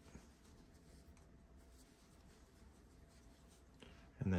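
Near silence, with the faint rustle and small clicks of a crochet hook being worked through yarn by hand.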